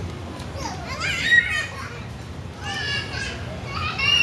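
Young children squealing and calling out as they play, with two high-pitched cries: one about a second in and one near three seconds.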